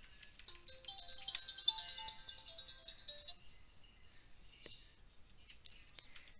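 A short tune of brief stepping notes over a fast run of high clicks, about nine a second. It lasts about three seconds and cuts off suddenly.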